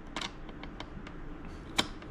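Hand screwdriver turning a screw into a plastic speaker-grill mount, giving small irregular clicks and ticks, with one sharper click near the end.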